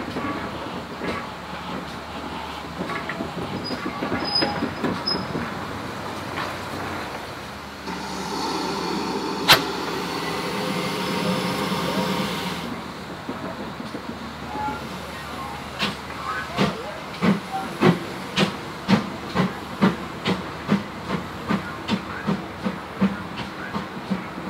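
GWR 4575-class Small Prairie 2-6-2 tank steam locomotive moving slowly, with a hiss of steam lasting about five seconds and one sharp knock within it. It then starts working, giving a steady run of chuffs about two a second.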